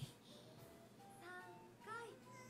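Very faint anime soundtrack: a child character's high voice speaking in short phrases over quiet background music.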